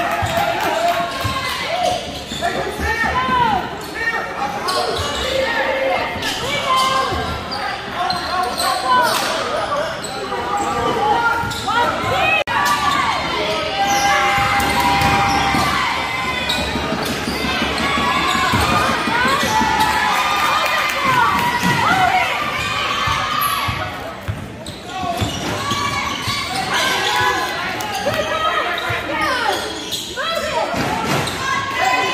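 Basketball bouncing on a hardwood gym floor during play, with sneakers squeaking and spectators' voices, all echoing in the gym.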